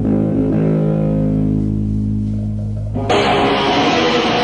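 Punk rock demo recording: electric guitar and bass hold a ringing chord that slowly fades, then about three seconds in the full band comes in suddenly and loudly.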